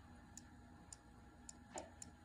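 Near silence with faint light ticks about every half second: a fingertip tapping the glass touchscreen of a first-generation iPod touch, typing letters on its on-screen keyboard.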